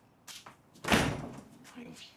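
A door slammed shut about a second in, one loud bang with a short ring after it, followed near the end by a brief vocal sound from a man.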